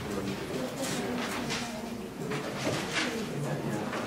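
Murmur of several quiet, overlapping voices: students talking among themselves as they work through a calculation in a lecture hall.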